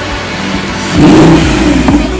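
A sports car engine revs sharply about a second in, over background music.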